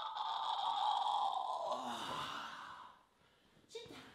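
A person's long, breathy sigh that fades out about three seconds in, followed by a short click near the end.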